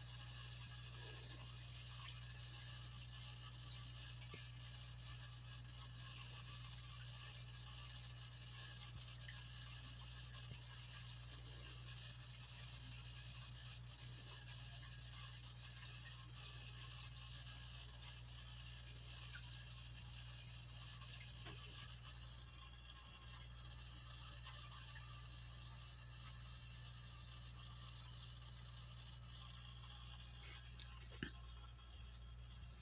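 Small desk fan running with a steady whir and low hum, with a couple of faint clicks.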